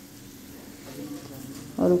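Soy-sauce gravy with onion and capsicum sizzling faintly in a frying pan.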